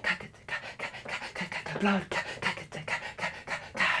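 A man making quick, rhythmic, breathy huffs with his mouth, about six a second, like vocal percussion.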